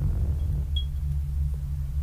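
Low, steady synthesized drone from an animated logo-intro soundtrack, with one brief high ping a little under a second in.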